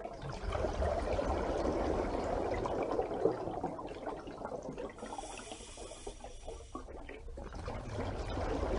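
Water bubbling and trickling, an irregular, continuous liquid sound. A faint hiss joins in for about two seconds near the middle.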